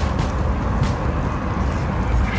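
Steady outdoor background rumble with a fainter hiss above it, even in level throughout and with no distinct events.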